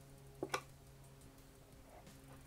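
Small electric solenoid clicking twice in quick succession, about half a second in, as it is powered from the bench supply and its shaft pulls free of the brass cup-hook latch so that the box lid can open.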